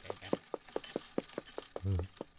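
A steady run of light clicks or ticks, about five a second, with a brief low hum just before the end.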